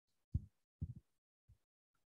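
A few short, dull low thumps over a video-call audio line: two within the first second and a faint third about halfway through, with dead digital silence between them.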